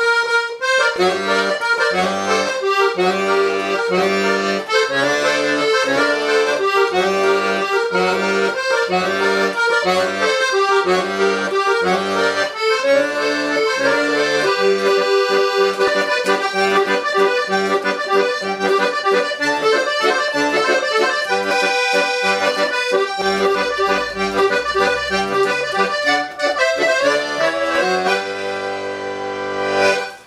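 Hohner piano accordion playing a chamamé: a right-hand melody over a regularly pulsing left-hand bass-and-chord accompaniment. Near the end the playing softens to a held chord.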